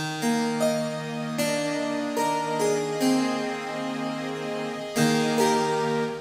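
Sampled harpsichord doubled in unison and layered with a soft string pad (the Harpsi-Pad Dbl Unison patch of IK Multimedia Philharmonik 2), playing a slow series of held chords. Each new chord starts with a bright plucked attack, with fresh chords about a second and a half in and again near the end, while the pad keeps the notes sustained.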